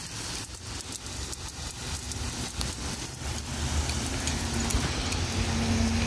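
Water spraying from a garden hose nozzle, a steady rain-like hiss and patter onto flowers and grass, slowly growing louder.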